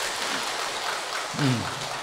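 A large audience clapping steadily.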